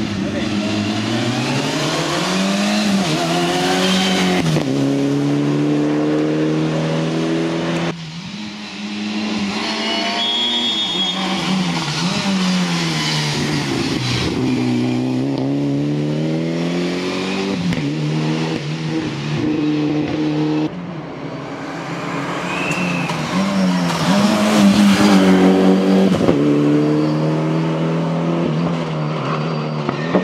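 Mitsubishi Lancer Evolution's turbocharged four-cylinder engine at full throttle, driven hard through the gears. The pitch repeatedly climbs and drops at each gear change as the car passes, with brief breaks about 8 and 21 seconds in.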